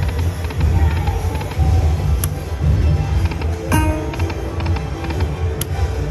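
Dragon Link 'Happy & Prosperous' video slot machine playing its reel-spin music over a steady low bass, with a chiming tone about two-thirds through and a few sharp clicks as the reels spin and stop twice.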